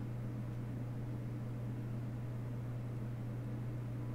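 Quiet background hum and faint hiss: a steady low hum with no other sound, the stream's room tone.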